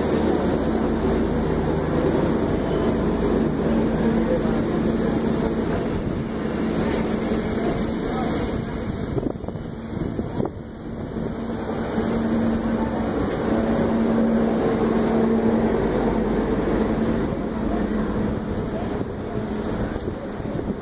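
Close passing of two trains: the coaches of an oncoming express run past on the next track with a steady rushing roar of wheels on rails and wind. A steady low hum runs underneath, and the roar eases briefly about halfway through.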